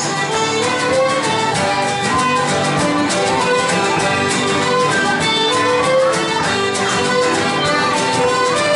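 Irish traditional music played live by an ensemble: fiddles carry the tune with piano accordion, banjo and guitar, at a steady, lively rhythm.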